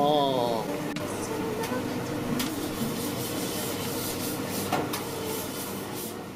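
Busy restaurant din: a short voice at the very start, then background chatter with scattered clicks and clatter of dishes and counter work.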